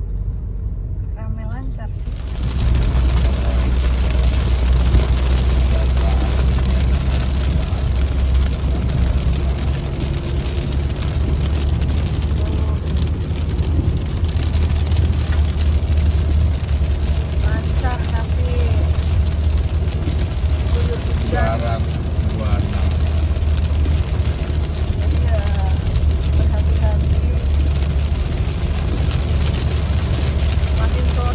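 Inside a moving car's cabin on a motorway in heavy rain: a steady low rumble of tyres and engine under an even hiss of rain on the windscreen and the wet road. It sets in abruptly about two seconds in.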